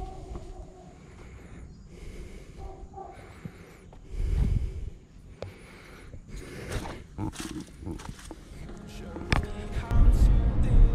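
Handling and wind rumble on a carried action camera while walking, with a louder rumble about four seconds in and several sharp knocks and clicks in the last few seconds.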